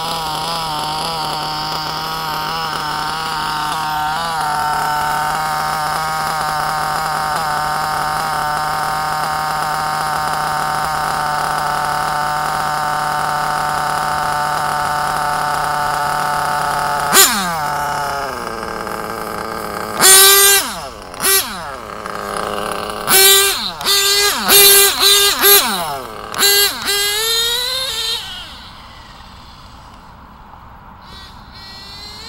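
Kyosho GT2 nitro RC car's small glow engine running at a steady high pitch, then dropping sharply in pitch about seventeen seconds in. From about twenty seconds it is revved in a string of short, loud bursts that rise and fall in pitch, and it fades near the end.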